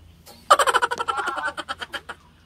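A burst of loud, high-pitched laughter, rapid and choppy, breaking out about half a second in and dying away near the end.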